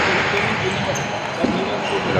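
Table tennis ball struck by rubber-faced bats and bouncing on the table during a rally: a few sharp ticks, the clearest about one and a half seconds in.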